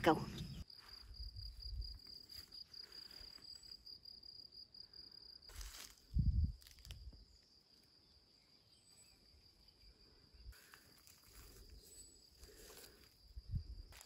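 An insect, most like a cricket, trilling steadily in a high, finely pulsing note; the trill is strongest for the first five seconds, then fainter. A few low thuds of footsteps break in, the loudest about six seconds in.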